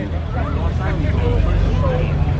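BMW E46 M3's S54 inline-six running at low revs as the car rolls slowly past, a steady low exhaust hum, with crowd chatter over it.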